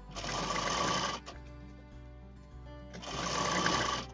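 Sewing machine stitching through fabric and lace in two short runs of about a second each, the first at the start and the second near the end, with a pause between.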